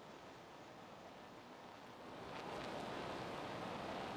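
Faint scraping and rustling of an adjustable wrench turning an AN fitting onto braided nylon fuel hose held in a vise, growing a little louder about two seconds in.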